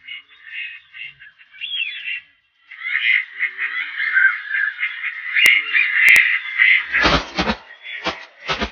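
A dense chorus of chattering, chirping calls from a large flock of ducks, broken off briefly near the middle. From about seven seconds in, a run of rough low bursts comes, about three a second.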